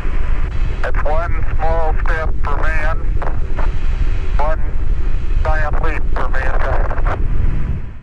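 A loud, steady low rumble with a windy hiss over it. Twice it carries bursts of an unintelligible, thin-sounding voice, in the first half and again in the second. The rumble fades out at the very end.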